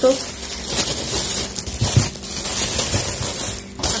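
Clear plastic bags crinkling and rustling irregularly as shoes wrapped in them are handled and moved about.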